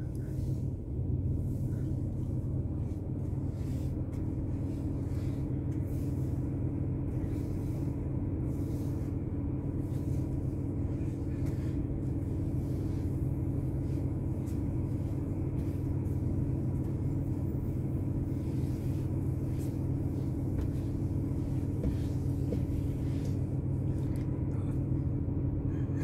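Vehicle engine idling steadily, heard as a constant low hum from inside the cab.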